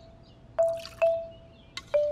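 Cartoon sound effect of milk pouring into a bowl: two dripping plinks about half a second apart over a faint pouring hiss. A held musical note runs underneath.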